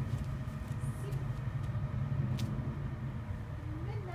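A steady low rumble, swelling a little around the middle, with one sharp click about two and a half seconds in.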